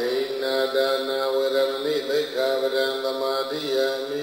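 Buddhist devotional chanting: voices holding long notes on a near-steady pitch, with short breaks for breath about two seconds in and again near the end.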